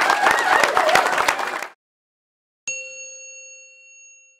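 An indoor crowd applauding, with a few voices, cut off abruptly about one and a half seconds in. After a second of silence a single bright bell-like chime strikes, several tones sounding together, and rings away slowly.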